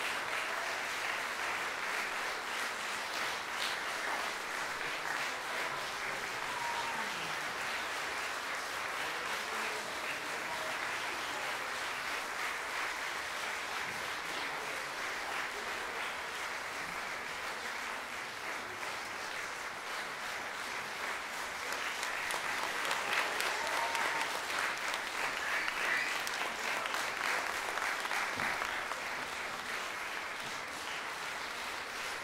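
A large concert-hall audience applauding steadily, growing louder for a few seconds past the two-thirds mark.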